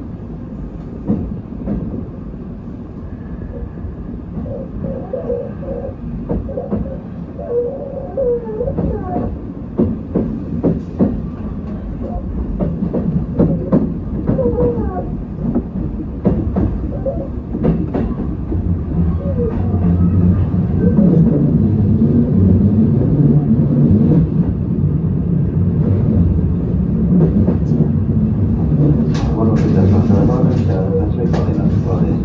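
Tobu 10050 series electric train running, with sharp clicks as the wheels pass over points and rail joints. The running noise grows steadily louder as the train gathers speed, with a steady low hum from about two-thirds of the way in.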